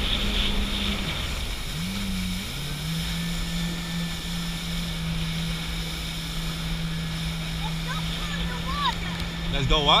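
Jet ski engine running at a steady cruising speed, its drone dropping in pitch about a second in, rising briefly a second later, then holding steady. Wind and hissing water spray from the hull run under it.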